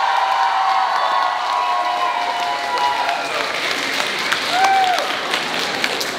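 Audience applauding and cheering, with voices calling out over the clapping.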